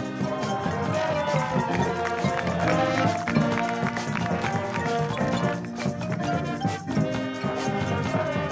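High school marching band playing: brass chords over drums keeping a steady beat.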